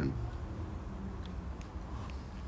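Low steady hum of the soundtrack's room tone, with a few faint ticks; no distinct sound event.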